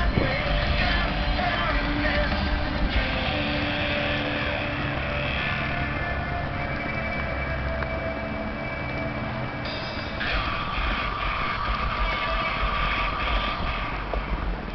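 Rock music with vocals played loud on a truck's Alpine car audio system, heard from some way off, with wind rumbling on the microphone.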